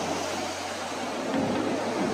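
Ocean surf washing onto a sand beach: a steady rushing noise, a little louder near the end.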